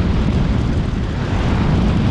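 Wind buffeting the microphone of a vehicle moving along a road: a steady, loud, low rumble with road and engine noise beneath it.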